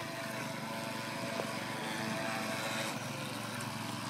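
Radio-controlled model speedboats running steadily across the water, a thin steady motor whine over a hiss of water.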